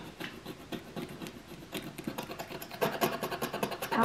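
A utility knife blade scraping old dried paint off window glass in a rapid series of short strokes.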